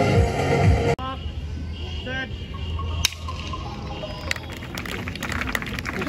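Background music with a beat that cuts off suddenly about a second in. It is followed by open-air crowd noise: scattered voices of children and onlookers, with a few sharp clicks.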